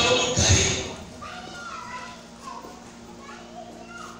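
Speech: a loud voice for about the first second, then quieter voices.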